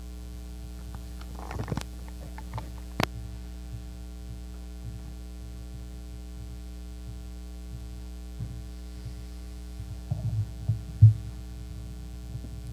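Steady electrical mains hum from the church sound system, with a few scattered knocks and footsteps as people cross the platform. A louder low thump comes near the end as the pulpit is approached.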